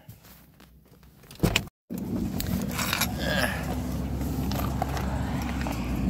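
Quiet phone handling, then a sharp knock about one and a half seconds in. After a brief dropout comes a steady low rumble of a running car engine, with rustling and handling noise on the phone microphone.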